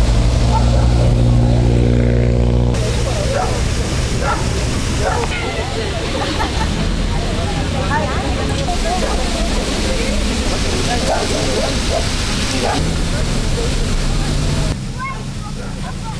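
A car's engine running as it drives past on a wet road for the first few seconds, then a steady rushing noise with the indistinct voices of people talking in the background.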